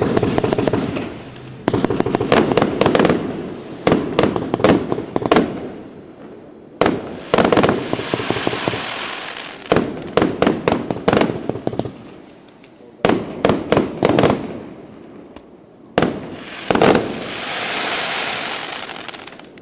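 A 36-shot consumer firework cake firing, its shots going off in quick clusters of sharp bangs. Between the clusters come stretches of hissing noise.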